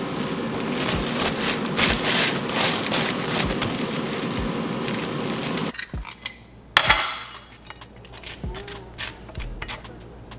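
Plastic bread bag crinkling and rustling as it is handled. It stops abruptly about five and a half seconds in, followed by one sharp clink and light scraping of a container and table knife against a ceramic plate as mashed avocado goes onto toast.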